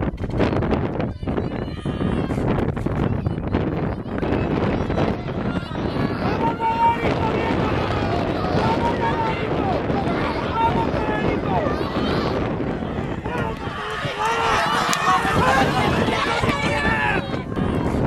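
Spectators shouting and yelling during a horse race, with wind rumbling on the microphone; the yelling is loudest near the end.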